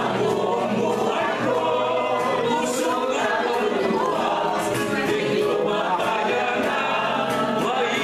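A roomful of people singing a Tagalog hymn together in unison, continuous and at a steady level.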